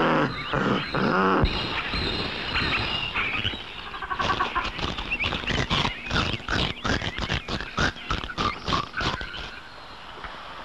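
Two people noisily biting and chewing a rose, with animal-like vocal noises at the start, then a quick run of crunching bites through the second half that stops shortly before the end.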